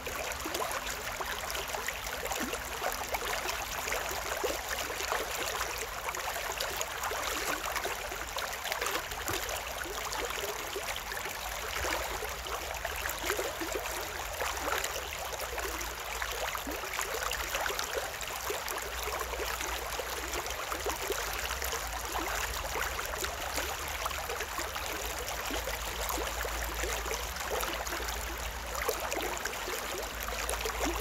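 Shallow stream running over stones and riffles, a steady rushing and trickling, with a low steady rumble underneath.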